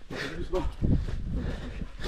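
Short, brief bits of a man's voice over a steady low rumble on the microphone.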